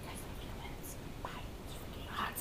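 Faint whispered speech over low rumbling handling noise from a handheld camera being carried.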